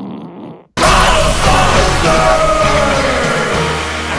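A wet fart sound effect played from a smart speaker, ending under a second in; then loud rock music cuts in suddenly and runs on.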